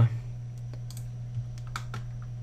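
Several light, sharp clicks of a computer mouse and keyboard being worked, spread through the second half, over a steady low hum.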